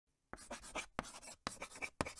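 Chalk writing on a blackboard: a run of quick scratchy strokes, each beginning with a sharp tap, starting about a third of a second in and coming roughly every half second.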